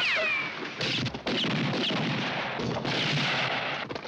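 Western-film gunfight sound effects cut together: a dense, loud din that stops and restarts abruptly several times. A falling ricochet whine sounds at the start and short whines follow later.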